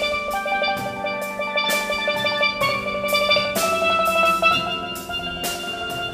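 Steelpan music with rapidly repeated, rolled notes over a light drum beat, moving to a new chord a couple of times.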